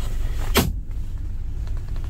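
A single sharp plastic click about half a second in, as the lid of the car's centre armrest console box is shut. It sits over a steady low rumble inside the car cabin.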